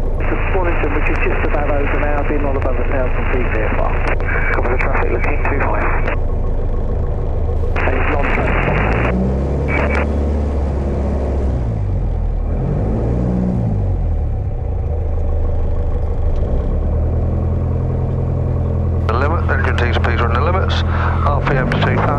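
Piper PA-28 light aircraft's engine running at taxi power, a steady low drone heard from inside the cockpit, its pitch wavering briefly midway. Air-band radio voices come over the headset for the first six seconds, briefly around eight and ten seconds, and again near the end.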